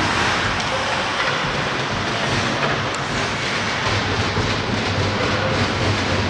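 Steady rumbling, hissing noise of ice-hockey play in a large, mostly empty arena, with skates working on the ice.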